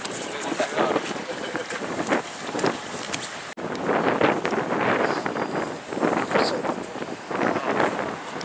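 A person talking, with wind noise on the microphone.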